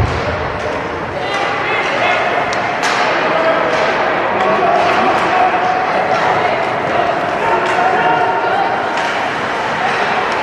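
Ice hockey game heard from the stands: crowd voices and shouts over a steady din in the rink, with a few sharp knocks of stick and puck, the loudest a little under three seconds in.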